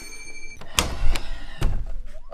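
A handful of short, sharp knocks and clicks, about five in two seconds, from a door being handled and opened.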